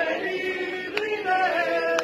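A man singing a slow melody in long held notes, with other voices singing along, and a sharp click about a second in.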